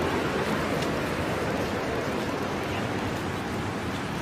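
Steady rushing of a river and waterfall swollen by heavy rain, an even wash of water noise with no pauses.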